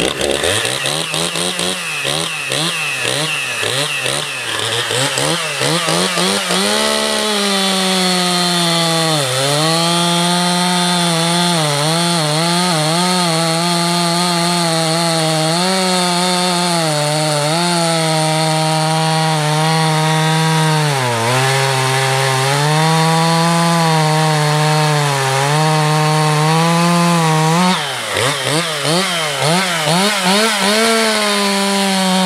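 Dolmar PS-5105 two-stroke chainsaw revved a few times, then held at full throttle while bucking an oak log, its pitch sagging and recovering under the load of the cut. Near the end the revs drop and the throttle is blipped as the cut finishes.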